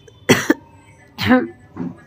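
A woman ill with fever coughing: a sharp double cough about a quarter second in, then two shorter, hoarser, voiced coughs.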